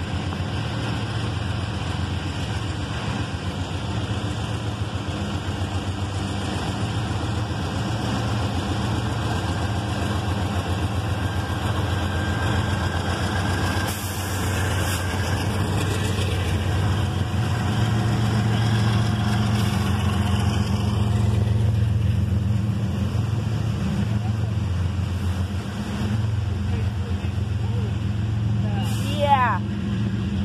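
Diesel freight locomotives passing close below, a steady low engine drone that grows to its loudest about two-thirds of the way through as they go by. Then comes the rumble of loaded freight cars rolling past, with a brief sharp, rising sound near the end.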